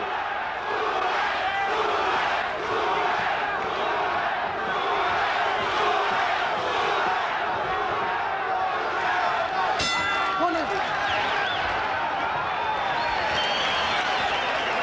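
Large boxing crowd chanting Duran's name, with shouting throughout. About ten seconds in, the ring bell sounds briefly to end the round.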